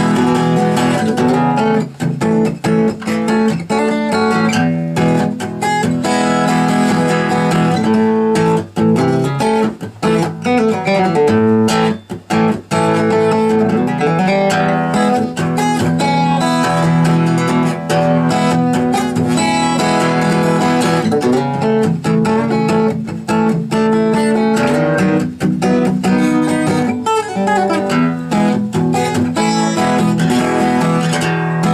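Seagull acoustic guitar played solo, strummed chords with single-note lead lines worked in between, picked up by a camera's built-in microphone. The strumming breaks briefly about twelve seconds in.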